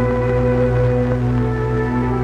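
Background film-score music: slow, sustained chords held steadily, with one note moving about halfway through.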